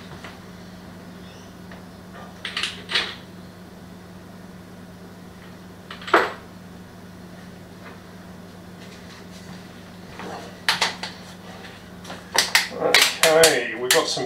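Kitchen handling sounds: a few light knocks and clicks, scattered and well apart, over a steady low hum, with a quicker run of clicks near the end.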